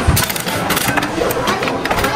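Knob of a coin-operated gashapon capsule-toy machine being turned by hand: a quick, uneven run of ratcheting clicks and clunks from the mechanism, with one heavier knock just after the start.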